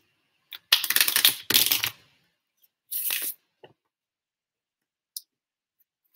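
A deck of tarot cards being shuffled by hand: a burst of rapidly flicking cards lasting about a second from just under a second in, then a shorter burst around three seconds in, with a few light clicks of card handling.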